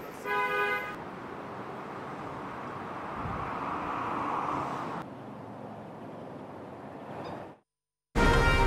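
City street ambience: a short car horn toot about half a second in, then steady traffic noise. At about five seconds it cuts to a quieter outdoor background, which drops out just before the end.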